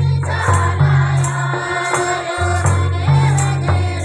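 A group of women singing a devotional song together in chorus, with clapping and percussion striking about twice a second over a deep, sustained bass accompaniment.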